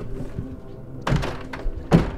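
Tense horror-film score held under two heavy thuds, one about a second in and a louder one just before the end.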